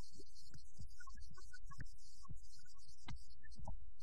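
Low, steady hum with soft, uneven thumps on a film soundtrack.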